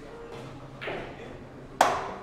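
Two sharp clacks of billiard balls in a pool hall. The first, just under a second in, is moderate; the second, near the end, is much louder, with a brief ring.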